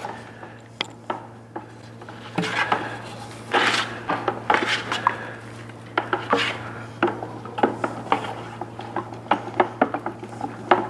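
Wooden paddle sticks scraping and knocking against the sides and bottoms of plastic five-gallon pails as epoxy resin and hardener are stirred by hand. Irregular clicks and scrapes, busiest from a few seconds in to just past the middle.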